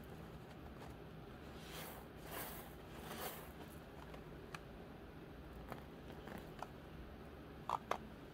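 Quiet handling sounds of beading work as small glass crystal beads and rose quartz chips are threaded onto craft wire: a soft rustle a couple of seconds in, then scattered small clicks, two sharper ones near the end.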